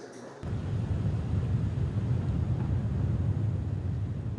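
Steady low rumble with a light hiss of outdoor ambient noise, cutting in abruptly about half a second in.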